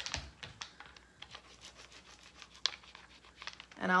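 Soft, irregular light clicks and plastic rustling as clear craft stamps and their supplies are handled, with one sharper click past the middle.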